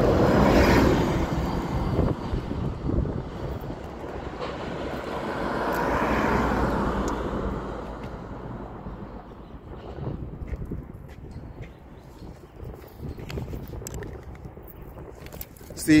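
Street traffic: vehicles passing, the noise swelling and fading about a second in and again around six seconds, over a steady low rumble.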